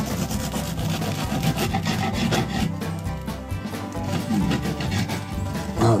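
Serrated bread knife sawing back and forth through the crust of a freshly baked loaf, a run of rasping strokes against the wooden cutting board beneath.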